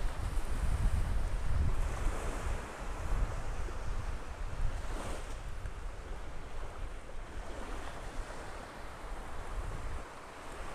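Wind gusting across a clip-on wireless microphone as a low, uneven rumble, strongest in the first few seconds, over small waves washing up the sand.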